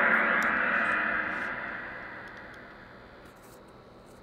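Kahoot quiz game-start sound effect, a gong-like crash that fades away steadily over about three seconds.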